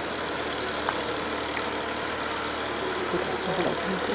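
A steady low rumble with hiss, with a few faint clicks and a faint voice near the end.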